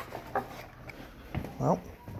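Unboxing handling noises: a sharp click at the start, then a few soft knocks and rustles as cables and plastic-wrapped parts are moved about in a cardboard box.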